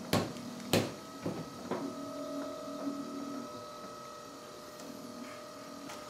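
Two knocks, then the home-made honey extractor's stepper motor runs with a steady faint whine. The extractor's drive has just become much harder to turn, as honey gums the unlubricated upper shaft bearing.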